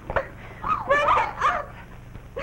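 Women's short shrieks and yelps, several in quick succession, as they grapple in a fight; a sharp knock comes just at the start.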